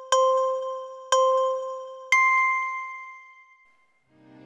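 A bell-like chime sound effect struck twice at the same pitch about a second apart, then a third strike an octave higher that rings on and fades away.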